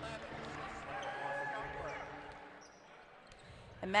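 Faint court sound of a basketball game in an arena: a ball bouncing and players moving on the court. It fades a little near the end.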